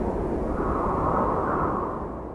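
Cinematic whoosh-and-rumble sound effect for a logo intro: a rush of noise over a deep rumble that stays loud, then begins to fade near the end.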